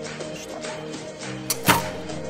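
Background music with a steady tune. About one and a half seconds in, two sharp snaps close together as a recurve bow is shot.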